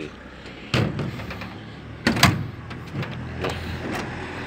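A few sharp knocks and clicks on the VW Kombi's door panel, the loudest about two seconds in, over a low steady hum.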